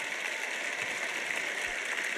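Large arena audience applauding: a steady, even patter of many hands clapping.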